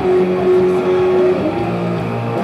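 Distorted electric guitar, a Gibson Les Paul through a Marshall MG30CFX amp, playing one sustained lead note that slides down into place at the start, holds, and then slides up to a new pitch about a second and a half in.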